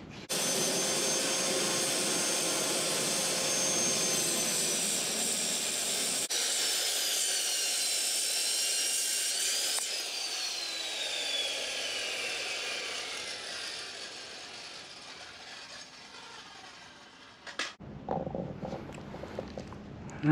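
Corded circular saw cutting into the aluminium Honda F23 engine block, a loud steady whine for about ten seconds. The trigger is then let go and the blade winds down, its whine falling in pitch and fading over several seconds. A sharp click comes near the end.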